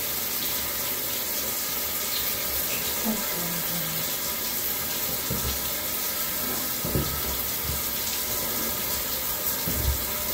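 Handheld shower sprayer running steadily, spraying water onto a wet dog's coat in a tiled tub, with a few dull low thumps.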